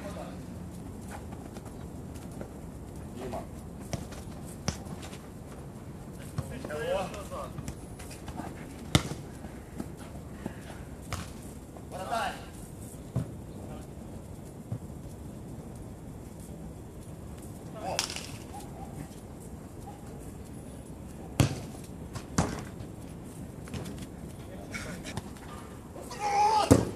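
A football being kicked on the pitch: sharp single thuds scattered a few seconds apart, the loudest about a third of the way in and two close together near the end. Short shouts and calls from players fall between the kicks.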